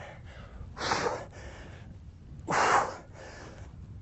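A man's sharp, forceful exhalations with the effort of kettlebell swings, twice, about a second and three quarters apart.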